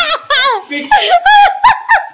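People laughing and giggling in short, high-pitched bursts.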